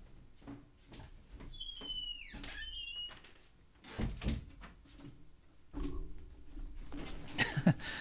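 A door being handled in a small room: a short high squeal about two seconds in, then two dull thumps, one about four seconds in and one near six, and more knocking about near the end.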